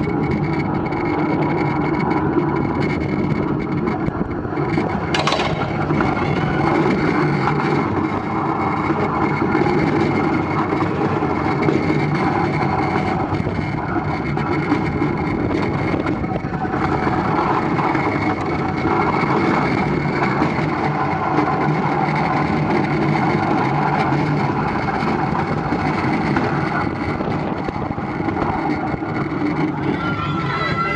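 ABC Rides tube coaster train rolling along its tubular steel track: a steady, continuous rumble of the wheels with a faint high whine above it, and one sharp click about five seconds in.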